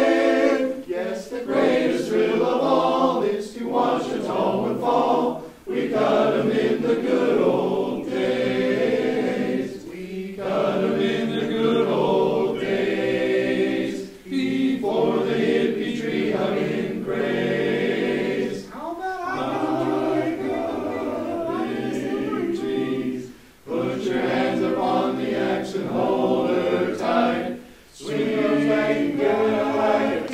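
A choir singing a cappella in several voices, in phrases of about four to five seconds with short breaks between them.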